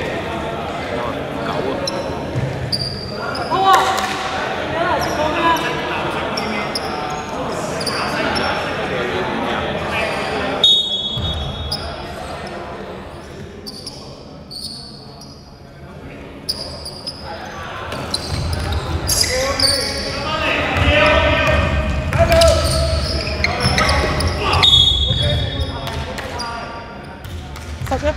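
A basketball bouncing on an indoor court amid players' voices calling out and short high shoe squeaks, all echoing in a large sports hall. It goes quieter for a few seconds about halfway through, then livelier again as play resumes.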